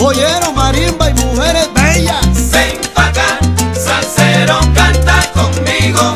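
Salsa music in an instrumental passage without singing: a steady bass line, dense percussion and sweeping, arching melodic phrases.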